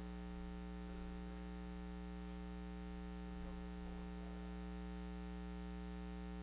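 Steady electrical mains hum in a microphone and sound-system feed: a low buzz made of a stack of even, unchanging tones. Faint, brief indistinct sounds come through twice, about a second in and about three and a half seconds in.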